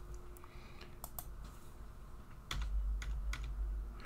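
Computer keyboard keys pressed in a few scattered clicks while code is edited.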